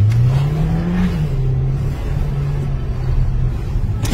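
Car engine accelerating, heard from inside the cabin over road noise: its pitch rises for about a second, drops back and holds steady, then fades near the end.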